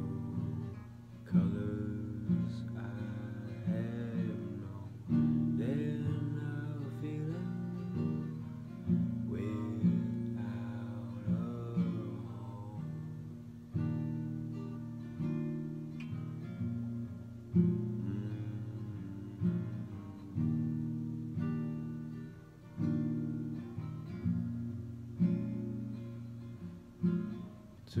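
Acoustic guitar played live. Chords are plucked and strummed every second or two, each ringing out and fading before the next.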